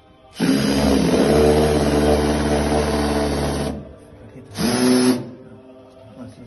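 Cordless drill running at a wooden doorpost to fasten a mezuzah case: one steady run of about three seconds, then a short second burst about a second later.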